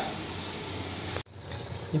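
Steady background hiss between spoken lines, broken by a sudden brief dropout a little over a second in where two recordings are spliced.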